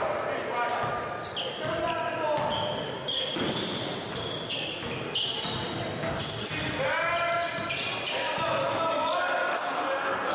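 Game sounds in a gymnasium: a basketball bouncing on the hardwood floor, short high-pitched sneaker squeaks, and indistinct shouts from players and crowd carrying through the hall.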